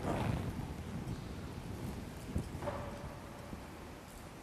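Footsteps and shuffling on a stone floor as a communicant gets up from the altar rail and walks away and the next one kneels, with a sharper knock about two and a half seconds in.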